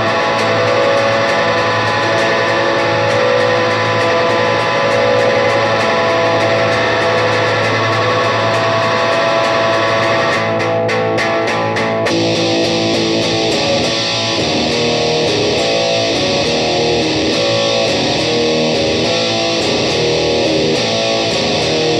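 Electric guitar (Eastwood Hi Flier Phase IV) played through a 1970s Randall Commander II combo amp, strumming a riff with a Boss DM-2w delay on. About twelve seconds in, the sound turns denser and grittier as a Boss DS-1 distortion pedal is switched in.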